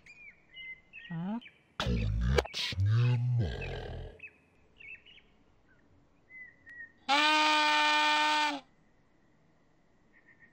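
Cartoon character sound effects: short high chirps and squeaks, then a low babbling, wordless voice for about two seconds. About seven seconds in, a single steady held note sounds for about a second and a half and cuts off suddenly.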